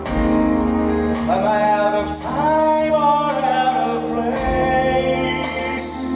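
Live band playing a song with keyboards, electric guitars and drums, a voice singing a gliding, held melody over the chords.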